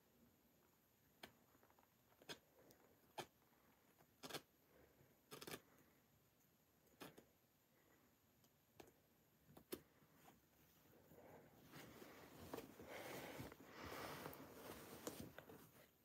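Faint, sharp snips of a seam ripper cutting the stitches of a jacket's sleeve lining one by one, about a dozen spread over the first ten seconds. After that comes a longer stretch of soft fabric rustling as the lining is handled and pulled open.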